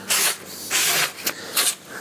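Hand-sanding the rough saw-cut edge of a plywood panel with a sanding block: about four short, irregular strokes, knocking off the splinters left by the cut.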